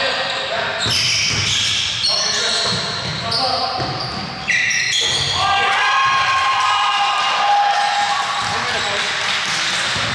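Basketball game on an indoor court: sneakers squeaking on the floor in many short, high squeals, with the ball bouncing and players calling out.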